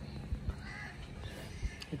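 A bird calls briefly and faintly a little under a second in, over low background noise with a few soft thumps.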